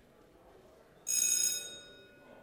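A single bell-like ring about a second in. It is loud for about half a second, then fades into a lingering tone, over a low murmur of the room.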